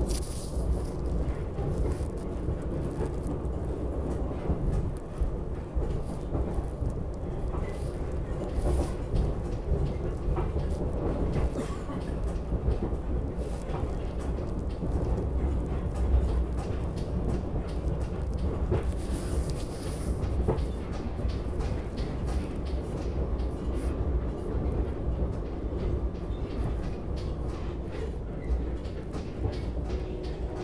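Inside a moving SEPTA regional rail electric train car: a steady low rumble of the wheels on the track, with scattered light clicks and a brief hiss about two-thirds of the way through.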